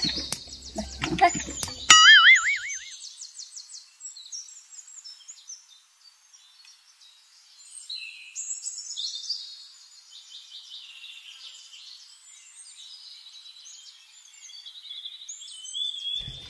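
Edited-in sound effects: a wobbling, springy boing about two seconds in, where the live sound cuts out, followed by faint, thin high-pitched chirps and trills.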